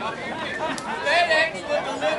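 Several people talking at once, their voices overlapping in indistinct chatter, with louder, higher-pitched voices in the second half.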